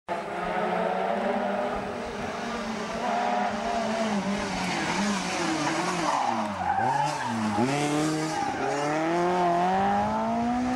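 Lancia 037 rally car engine coming up the road under power. Its revs drop twice, about six to seven and a half seconds in, as it brakes and changes down for the bend, then climb steadily as it accelerates away.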